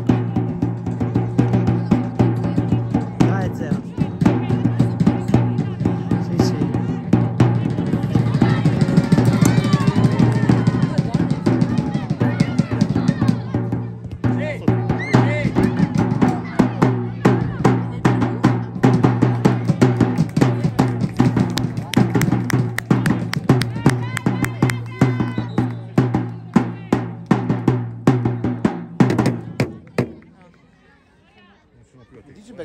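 Music with heavy drumming: fast, dense drum beats over a steady low droning tone, with voices heard in places. It cuts off suddenly at the end.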